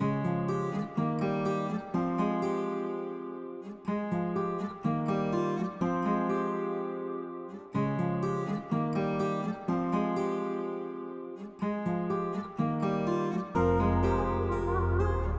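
Intro of a trap instrumental beat: a plucked acoustic-style guitar loop of decaying chords, repeating about every four seconds. Deep bass comes in just before the end.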